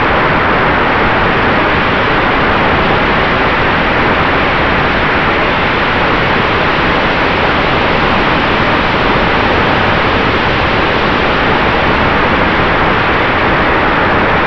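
Electric ducted fan of a Freewing F-86 Sabre RC jet running at steady power, heard from a camera on the airframe in flight, mixed with a steady rush of air over the microphone. A faint steady whine runs through the noise.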